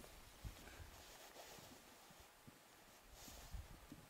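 Near silence: faint outdoor ambience with a few soft low thumps.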